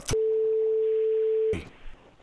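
A censor bleep: one steady mid-pitched tone, about a second and a half long, that starts and stops abruptly, blanking out a phone number as it is read aloud.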